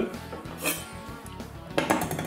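Background music, with a chef's knife clinking twice as it is lifted off a wooden cutting board and set down.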